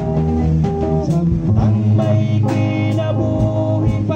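Live worship song, with guitar and singing over a steady beat.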